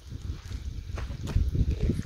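A few footsteps on dry, packed dirt over a low rumble of wind on the microphone.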